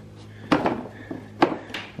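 A few sharp clicks and knocks from a hand-held metal nut driver on a small bolt and the plastic side cover of a lawn tractor as the bolt is worked loose, with the first about half a second in and the last near one and a half seconds.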